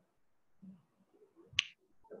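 A single short, sharp click or snap about one and a half seconds in, over faint, scattered low background noise.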